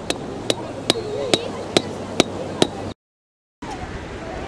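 Hammer driving a tall pole into beach sand: seven sharp strikes, about two a second. The sound then drops out abruptly about three seconds in.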